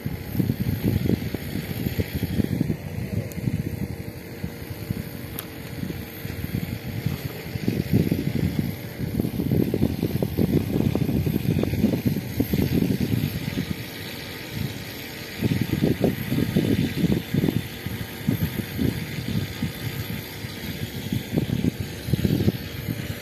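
Wind buffeting the microphone: an irregular low rumble and flutter that eases off briefly about two-thirds of the way through.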